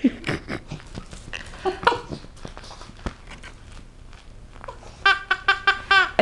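Small Chihuahua–Cocker Spaniel puppy growling in short bursts at a plush toy, with scattered clicks and scuffs on a hard floor. A person laughs in quick bursts about five seconds in.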